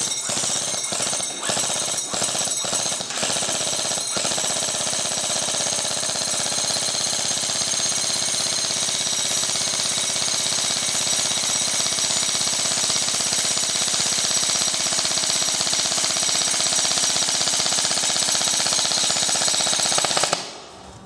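Socom Gear-built Robinson Armament XCR-RDC airsoft electric gun firing full auto on a 9.6 volt battery. It fires several short bursts in the first few seconds, then one long unbroken burst of about sixteen seconds, its gearbox cycling rapidly.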